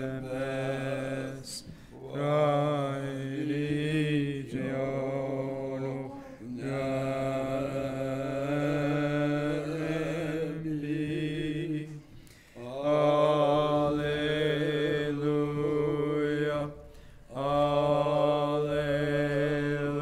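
Unaccompanied Orthodox liturgical chant, sung in long, held phrases over a steady low note, with short breaks between phrases.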